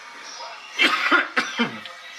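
A person coughing, a short run of coughs about a second in.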